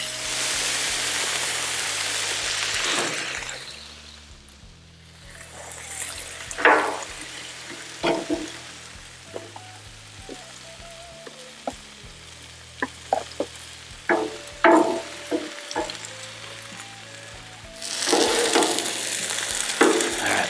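Chicken and vegetables sizzling on a hot Blackstone flat-top steel griddle, loudest for the first few seconds and again near the end. Metal spatulas scrape and clink on the griddle surface in the quieter middle stretch.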